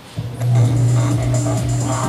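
Music starting about a quarter second in, carried by a steady, loud low bass note.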